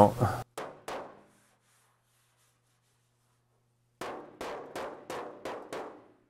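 Body hammer striking the sheet-metal shroud of an Austin-Healey 3000, dressing down high spots: two sharp strikes about half a second in, then a quick run of about six strikes, roughly three a second, near the end.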